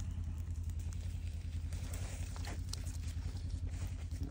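A steady low engine-like hum runs throughout. Over it come a few faint sharp crackles and snaps about halfway through, from a low grass-and-brush fire creeping through pine undergrowth.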